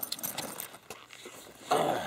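Small clicks and rattles of gear being handled, like keys or buckles jangling. A louder rustle comes near the end as a bag is lifted.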